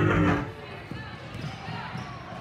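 Music that cuts off about half a second in, giving way to the sounds of a basketball game in a gym: a ball bouncing and sneakers squeaking on the hardwood floor, with faint voices.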